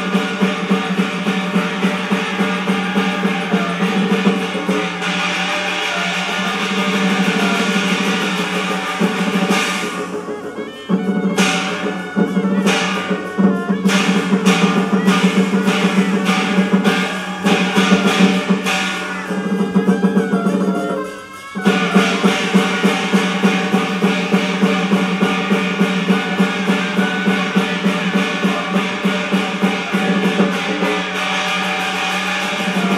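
Teochew opera instrumental ensemble playing rhythmic accompaniment for stage movement, drums and percussion to the fore with melodic instruments, without singing. The music thins briefly about ten seconds in and drops away for a moment about twenty-one seconds in before the full band resumes.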